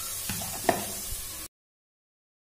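Soaked chana dal and masala sizzling in oil in a pressure cooker, with a couple of light knocks from the spoon. The sound cuts off suddenly about one and a half seconds in.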